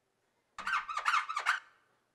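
A quick run of about four high-pitched squeaks with bending pitch, starting about half a second in and lasting about a second.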